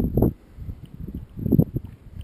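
Wind buffeting the microphone in two low gusts, one at the start and one about a second and a half in.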